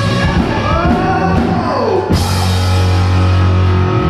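Loud rock music with drum kit, guitar and singing. A falling pitch glide comes just before two seconds in, then a sudden crash and a held low chord.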